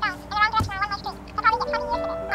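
A high, wavering, voice-like sound in quick short pieces, with music of held notes coming in about halfway through.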